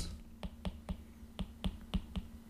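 Pen stylus tapping and clicking on a tablet screen while handwriting: a run of short, sharp clicks, roughly three to four a second.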